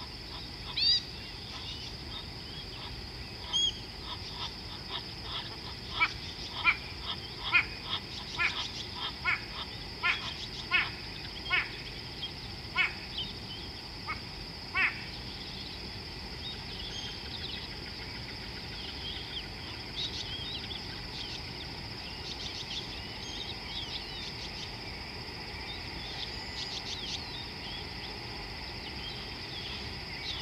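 Steady high trilling of an insect chorus, with a run of about a dozen sharp, evenly spaced animal calls a little under a second apart through the first half, and scattered light chirps later on.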